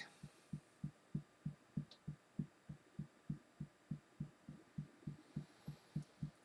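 Fingertips tapping on the collarbone point in EFT tapping: faint, dull taps at an even pace of about three to four a second.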